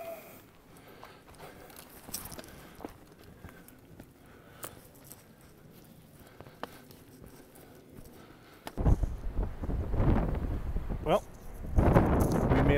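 Quiet footsteps and scuffs on a rocky trail. About nine seconds in, wind starts buffeting the microphone loudly.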